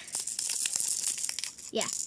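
Small beads rattling inside a plastic cupcake-shaped hand sanitizer holder as it is shaken: a fast patter of tiny clicks that stops about a second and a half in.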